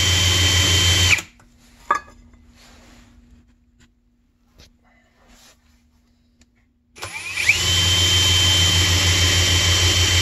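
Electric drill spinning a snowmobile oil injection pump on the bench. It runs steadily for about a second and stops, followed by a few seconds of quiet with a faint hum and a click, then starts again about seven seconds in and runs steadily at an even pitch, with the pump's control arm raised to the full-throttle position.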